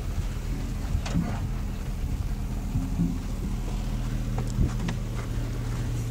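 An off-road vehicle's engine running steadily at low speed while crawling over a rocky trail, with a few sharp knocks and crunches from tyres on rock and gravel.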